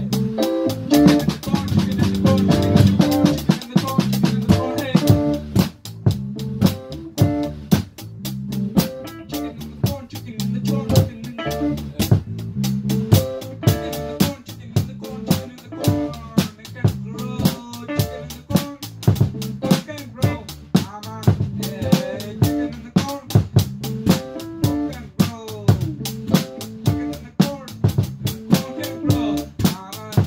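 A small band playing an instrumental passage: an electric bass guitar line over a drum kit keeping a steady, even beat.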